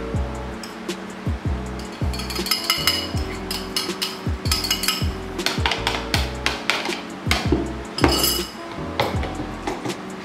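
Repeated clinks and knocks of a metal spoon tapping and scraping a bowl as rice flour is tipped into a plastic food-chopper jar, over background music.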